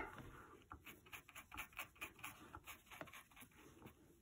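Faint, short scratchy strokes of a stiff scrubby paintbrush working paint into fabric, about three or four a second, after a small click at the start.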